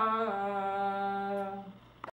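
A woman's solo voice holds the final note of a verse sung in Havyaka traditional style. After a brief waver the note settles onto one steady pitch, then fades away near the end.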